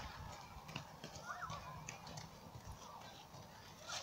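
Horses moving about on muddy ground: faint, scattered hoof steps and soft thuds. There is one short high call about a second and a half in.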